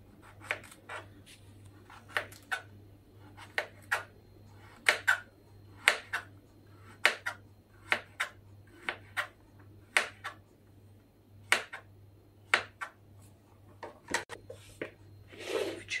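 Kitchen knife slicing a porcini mushroom stem on a plastic cutting board: short, sharp taps as the blade goes through and meets the board, about one or two a second, often in pairs.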